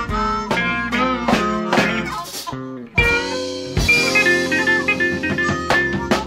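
Electric blues band recording in an instrumental passage: electric guitar licks over drums. The sound drops briefly just before three seconds in, then comes back with a sharply struck, held chord.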